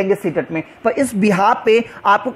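Only speech: a man talking in a steady lecturing voice, with a short pause about two-thirds of a second in.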